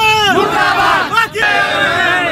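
A crowd of young women and girls shouting protest slogans together, in loud repeated shouts that rise and fall in pitch, with a short break a little past the middle.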